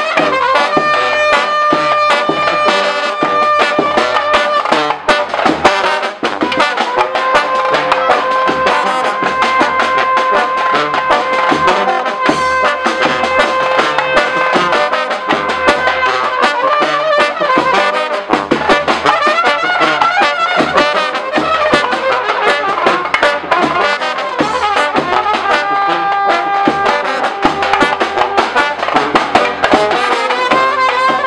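Serbian street brass band playing live: trumpets and tubas carry long held melody notes over a steady bass-drum beat.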